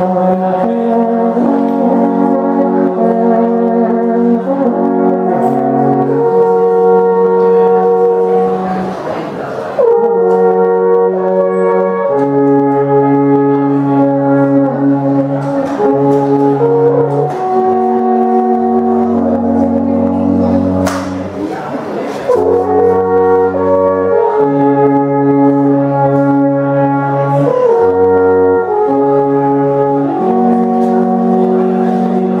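Three Swiss alphorns playing a slow melody together in harmony, long held notes changing in step. The playing breaks briefly between phrases about ten seconds in and again a little after twenty seconds.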